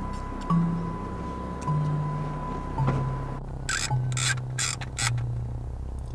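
Background music with a slow, stepping bass line. A little past halfway, a quick run of about five sharp clicks comes in: a handheld camera's shutter being fired several times in a row.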